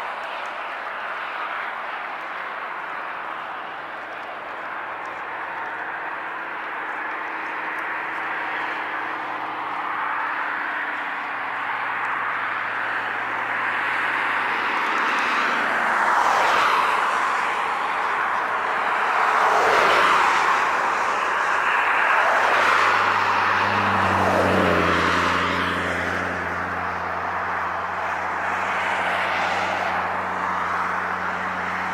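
Road traffic: a steady rush of vehicles, swelling as several pass by in the middle of the stretch, with a steady low engine hum setting in about two-thirds of the way through.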